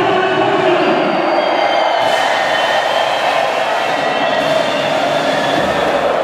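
Large arena crowd cheering steadily, with a higher hiss joining in about two seconds in.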